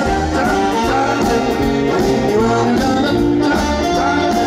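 A big band playing live in jazz style: saxophone section with brass over a drum kit, cymbals keeping a steady beat.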